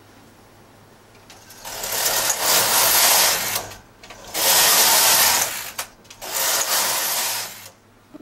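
Knitting machine carriage pushed across the needle bed, knitting rows of plain stockinette: three passes of about two seconds each with short pauses between, starting about a second and a half in.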